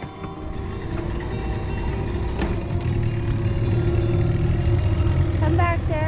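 Small outboard motor on an inflatable dinghy running as the dinghy gets under way. Its low rumble grows stronger in the second half, with one click about two seconds in. Background music with a held note runs over it, and singing comes in near the end.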